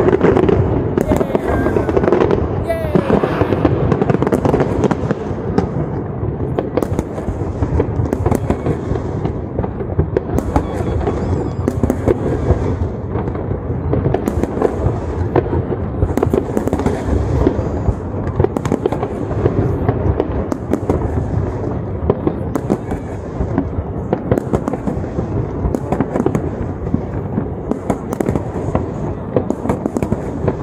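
Large aerial fireworks display: a dense, continuous run of bangs and crackles over a low rumble, thickest in the first few seconds.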